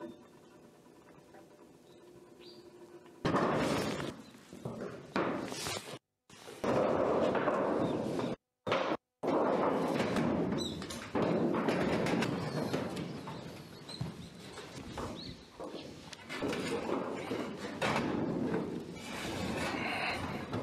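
Near silence with a faint hum at first. Then, a few seconds in, knocks, thuds and rustling of work on a corrugated sheet-metal roof, cut off twice by brief dropouts.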